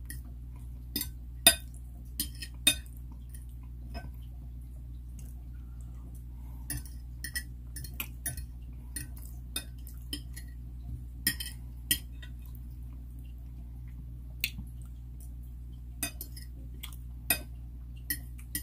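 Metal fork clinking and scraping against a ceramic dinner plate while eating, in irregular sharp clinks that come in small clusters, over a steady low hum.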